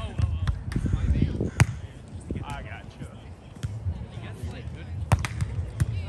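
A volleyball being struck by players' hands and forearms during a rally: several sharp hits, the loudest about one and a half seconds in and two more close together near the end. A player's short call comes in between.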